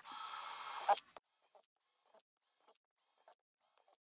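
Cordless drill running for about a second with a steady high whine as it bores a hole through the bottom of a thin plastic storage box, then cutting off suddenly.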